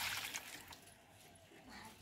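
Water being poured onto potted plants, a splashing hiss that tails off within the first second.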